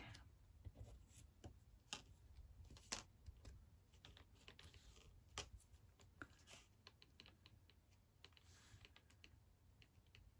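Very faint handling sounds of cardstock: scattered small clicks, taps and light paper rustles as the layers are shifted and pressed flat by hand, with a brief soft rustle about eight and a half seconds in.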